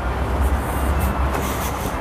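Loud, steady low rumble with a hiss over it: outdoor street noise.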